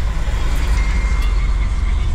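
Steady low rumble of engine and tyres heard inside the cabin of a moving car on the road.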